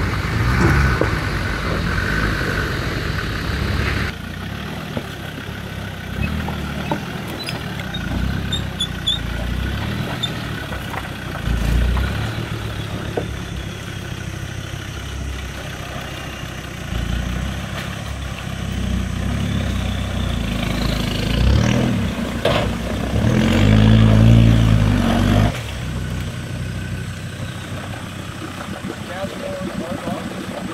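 Land Rover Defender 110's TD5 five-cylinder turbo-diesel working at low speed while crawling up a rocky creek bed through a muddy pool, the revs rising and falling in surges. The loudest surge comes a little past two-thirds of the way in and cuts off suddenly about four seconds before the end.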